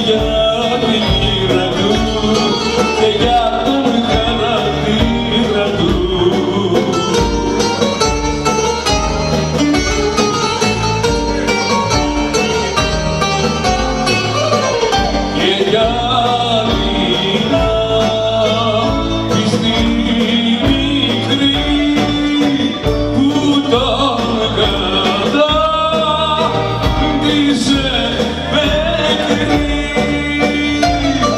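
Live Greek band music: a bouzouki melody over drum kit and keyboards, with a male singer.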